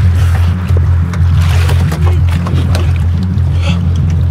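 Background music with a loud, steady bass line.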